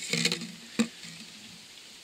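A thin plastic drink bottle crinkling and scraping as a plastic sewer pipe is pushed into it, mostly in the first half second, with a short knock a little later.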